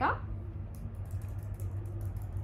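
Typing on a laptop keyboard: a quick run of light key clicks in the second half, over a steady low hum.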